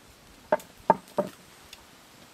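Kitchen knife cutting through a peeled eggplant and knocking down onto a wooden cutting board three times in quick succession, about a third of a second apart.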